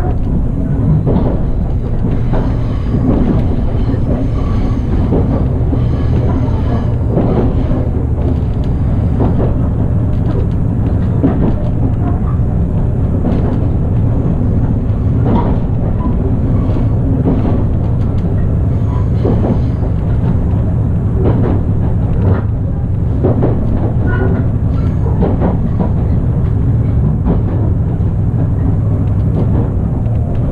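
Running noise inside a Resort Shirakami train carriage on the move: a steady low drone with scattered clacks of the wheels over rail joints.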